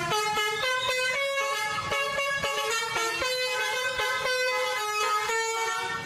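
A comic sound-effect tune in a horn-like tone, a run of short notes that step up and down in pitch.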